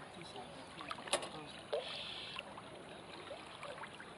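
Moving river water, with scattered short chirping calls and a sharp click or small splash about a second in.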